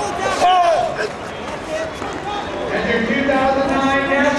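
Human voices shouting, with the echo of a large hall. Short yells come in the first second, then a long drawn-out call starts about three seconds in.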